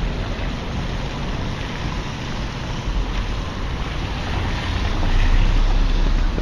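Wet city street noise: car tyres hissing on the rain-soaked road, with wind rumbling on the microphone that grows stronger about five seconds in.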